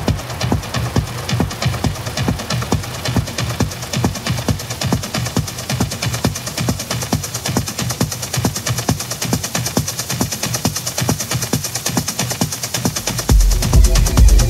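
Techno track in a breakdown: the kick drum and deep bass drop out, leaving a steady, quieter pattern of percussion and hi-hats. The full bass and kick come back near the end.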